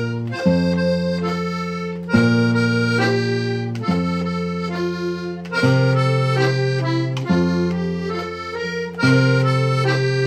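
A Hohner Club II B diatonic button accordion plays a tune in two-four time in F major, with a concert guitar accompanying. The accordion's held bass chords change about every second and a half, each starting sharply and slowly fading under the melody notes.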